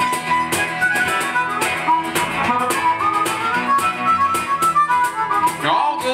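Harmonica solo, held and bending notes played over a steadily strummed guitar rhythm, in the instrumental break of a country-folk song.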